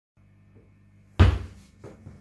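A single heavy thump about a second in, then a lighter knock just before the end, over a faint steady hum.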